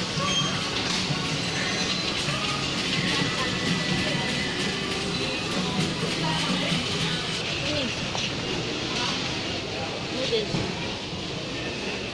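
Supermarket ambience: music playing over indistinct chatter of shoppers' voices and a steady low hum.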